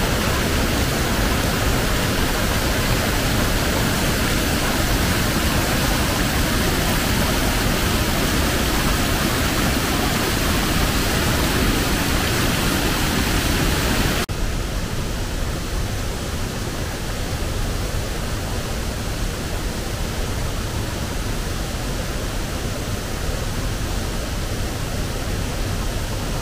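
Waterfall rushing, running high and strong: a steady roar of falling water. About halfway through, the rush turns suddenly duller and a little quieter.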